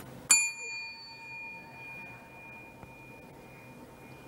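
A small bell struck once, ringing with a clear high ding that fades away over about three seconds.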